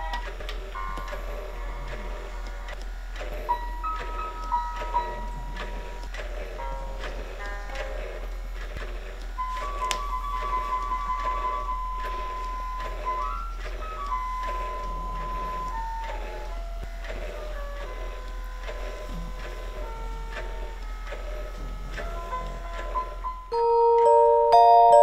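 Electronic lullaby tune playing from a Graco Simple Sway baby swing's built-in speaker: a simple beeping melody over a regular pulse, with a steady low hum underneath. Near the end a louder, brighter tune starts.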